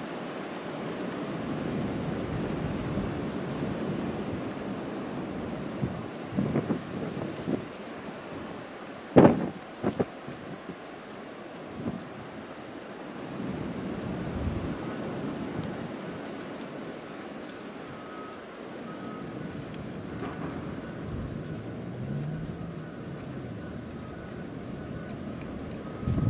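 Blizzard wind gusting, a steady rushing that swells and eases. A few sharp knocks cut through about six to ten seconds in, the loudest about nine seconds in.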